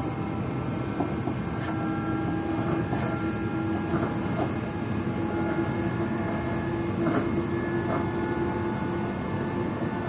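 A passenger train carriage at speed, heard from inside: a steady rumble of the wheels on the rails with a constant droning tone, and now and then a brief sharp click from the track.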